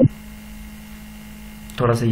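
A steady electrical hum in the recording, with a man's voice resuming near the end.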